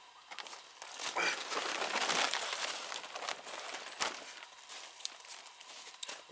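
Plastic tarp rustling and crinkling as it is shaken out and laid flat on the ground, loudest in the first half. A short sharp tap about four seconds in.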